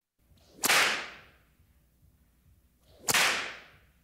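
Two sharp, whip-like cracks about two and a half seconds apart, each with a short swell just before it and a tail that fades quickly.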